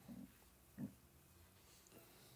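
Near silence: room tone, broken by two faint, brief low voiced sounds less than a second apart, like a short hum or throat noise from the teacher.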